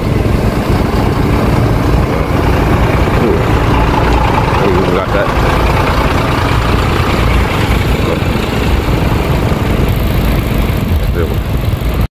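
Steady low rumble of a small motorbike engine running at low road speed, mixed with wind buffeting the microphone.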